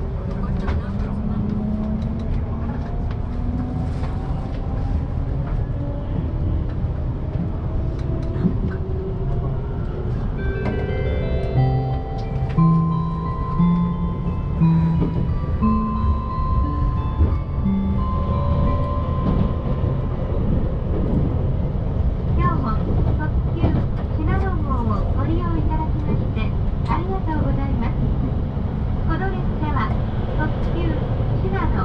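An electric train running on the JR Chūō Main Line, heard from inside the car: a steady rumble of wheels and motors. A motor whine rises in pitch over the first few seconds as the train picks up speed. In the middle, a run of stepped tones sounds for several seconds.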